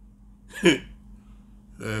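A man's voice: one short syllable with a sharply falling pitch about two-thirds of a second in, then speech resuming near the end.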